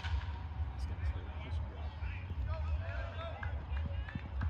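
A baseball bat striking a pitched ball: one sharp crack right at the start. Spectators' voices follow faintly over a steady low rumble.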